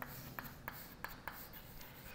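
Chalk writing on a chalkboard: a string of faint short taps and scratches as the letters are written.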